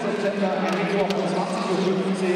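Crowd noise in a large sports hall: many voices mingling over a steady tone, with a few sharp knocks.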